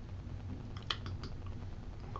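A short run of about four quick clicks on a computer keyboard, over a low steady hum.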